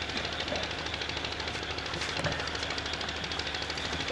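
Steady background hum with a fast, even pulsing buzz, machine-like, with no speech over it.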